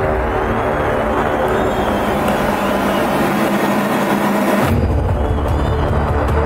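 Electronic intro music. The bass thins out under a rising hiss build-up, then the hiss cuts off and the heavy beat comes back in near the end.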